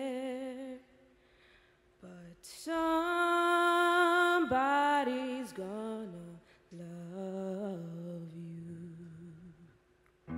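A woman singing a slow lullaby unaccompanied, in long held notes with vibrato. Her voice stops briefly about a second in, then holds one long note and falls away through a few lower notes before a softer closing phrase.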